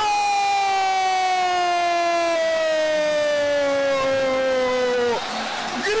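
A male commentator's long drawn-out goal call: one held shout of about five seconds, its pitch sliding slowly downward, that breaks off about five seconds in. It marks a goal just scored.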